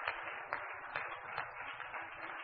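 Faint steady hiss of room or recording noise, with a few soft clicks about half a second apart.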